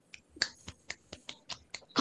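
A quick, uneven run of sharp clicks, about five a second.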